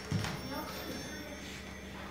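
Indistinct voices in a shop, with a short louder sound just after the start.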